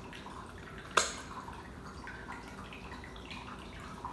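A person chewing a snack: a sharp click about a second in, then faint, scattered wet mouth sounds.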